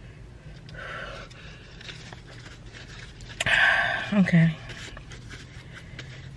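A woman breathing hard against the burn of very spicy chicken: a soft breath about a second in, then a loud breathy exhale past halfway, cut off by a short groan that falls in pitch.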